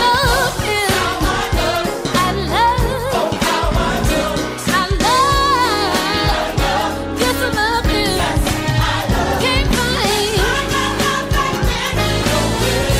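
A gospel song playing: a lead voice singing melodic runs with vibrato over a band with bass and a steady beat.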